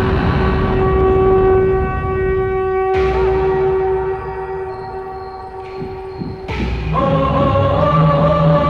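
Dramatic film score: one long held pitched note over a deep rumble, with sudden swells about three seconds and six and a half seconds in, and a choir coming in near the end.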